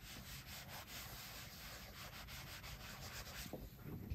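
A mini iron sliding back and forth over a folded t-shirt hem: a faint, scratchy rubbing of the soleplate on the fabric as the fold is pressed flat.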